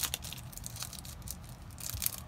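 A hand handling a deck of trading cards, with soft rustling and scratching and a light click at the start and another near the end.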